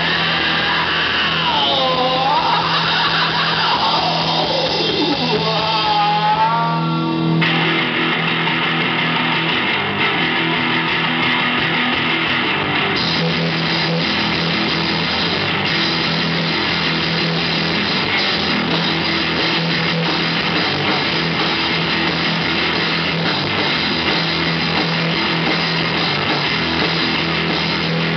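A live rock band playing loud, with electric guitar and drums. In the first seven seconds a high note wavers up and down and slides downward before it stops, and after that the band holds a dense, steady wall of sound.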